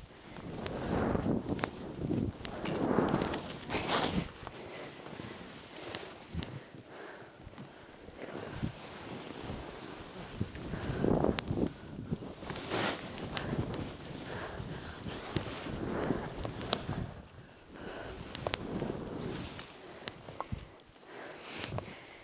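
Skis turning through deep powder snow: a run of swelling swishes, each a second or two long, with occasional sharp clicks.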